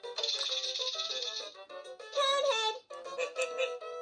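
VTech Shake It Bluey toy playing a tinny electronic tune through its speaker, with a maraca rattle for about the first second and a half and a short pitched voice phrase a little after two seconds in.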